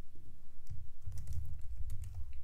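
A few scattered keystrokes on a computer keyboard.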